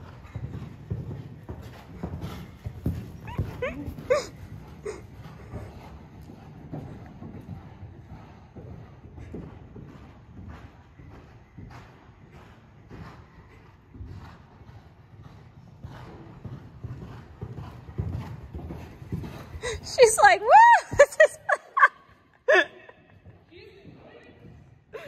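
Horse's hoofbeats cantering on sand arena footing, a run of dull, rhythmic thuds. About twenty seconds in, a loud call with wavering, swooping pitch rises over them.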